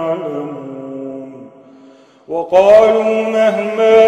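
A man reciting the Quran in a melodic tajweed style. A long held note trails off and fades out about one and a half seconds in, and after a short pause a new phrase begins loudly about two seconds later.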